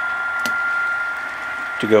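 A single sharp click about half a second in, a toggle switch on a model railroad control panel being thrown to set a turnout. A steady high-pitched whine runs under it throughout.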